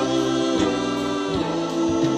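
A live band playing, with voices singing together over held Hammond organ chords, electric guitar, bass and drums.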